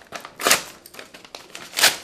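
A sheet of paper being crumpled and handled, with crinkling crackles and two louder crunches, about half a second in and near the end.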